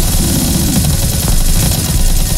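Live-coded TidalCycles electronic music: a dense, distorted, bass-heavy texture. A low tone glides downward in the first half-second or so.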